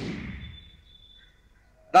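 A TV news transition whoosh that falls in pitch and fades away over about a second and a half, with a faint high tone beneath it.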